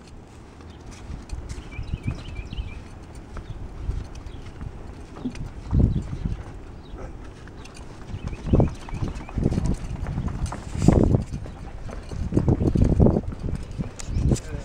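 Footsteps in sandals on a wooden boardwalk: an uneven run of hollow knocks on the boards that grows louder and closer together in the second half.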